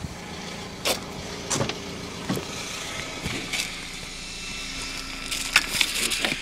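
Scattered knocks and rustles of handling and moving about, heard through clothing pressed over the phone's microphone, with a quicker run of sharper clicks near the end.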